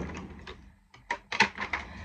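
Objects being handled on a desk: a string of sharp clicks and light knocks.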